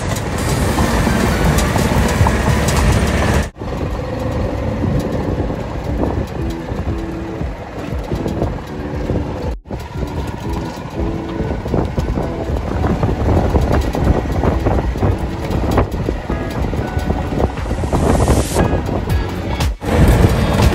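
Golf cart driving along, its running noise mixed with wind buffeting the microphone, broken by two brief dropouts about three and a half and nine and a half seconds in. Faint music underneath.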